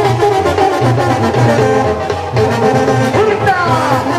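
Brass band music, with trombones and trumpets holding notes over a steady repeating bass beat.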